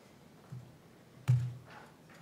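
Two laptop key taps picked up by the lectern microphone, a faint one about half a second in and a louder knock with a low thud a little past the middle, as a code cell is run.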